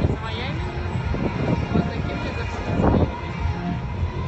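Wind buffeting the phone's microphone as a fluctuating low rumble, with people's voices and faint music underneath.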